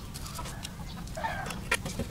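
Scattered light clicks and taps of a smartphone's plastic frame and parts being handled and unscrewed, over a low steady hum, with a brief mid-pitched sound a little after a second in.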